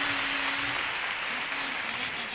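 Audience applauding steadily after a carnival chorus.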